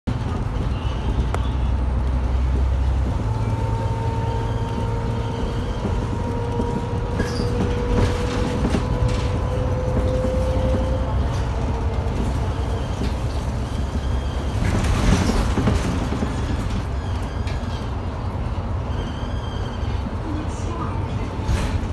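Cabin sound of a MAN Lion's City city bus on the move: a steady low engine rumble, with a whine rising in pitch from about three to eleven seconds in as it gathers speed, and a short louder hiss about fifteen seconds in.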